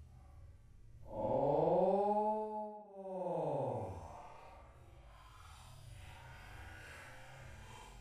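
A man's long, wordless exclamation that rises and then falls in pitch over about two seconds, followed by a shorter, quieter vocal sound.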